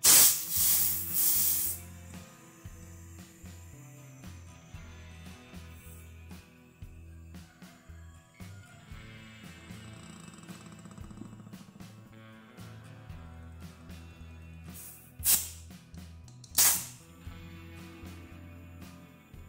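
Compressed air hissing from an air chuck pressed onto the valve stem of a tiller tyre's new inner tube as it is being inflated: two loud bursts at the start and two short ones near the end.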